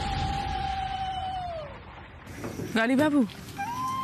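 Background score of a TV drama: a held synth note slides down and fades away. About three seconds in comes a short wavering call, and then a new steady high note begins.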